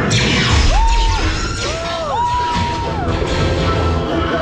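Dark-ride soundtrack of music and sound effects over a heavy low rumble, opening with a sudden loud blast, followed about a second in by several rising-and-falling electronic tones.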